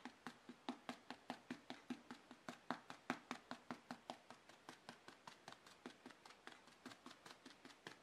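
Faint, rapid, even taps of a sponge dabbing paint onto a hollow vinyl reborn doll's leg, about four a second.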